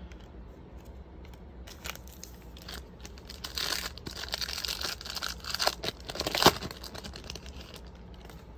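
A trading-card pack wrapper being torn open and crinkled, in rustling bursts, with one sharper crack near the end.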